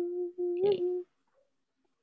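A person's voice humming a steady, level note, with a short spoken "okay" in the middle of it.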